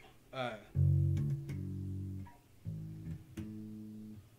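Ibanez Musician four-string electric bass plucked with the fingers: four single notes, the first and loudest coming about a second in and held about a second and a half, then two shorter notes in the second half, accenting individual notes of a chord.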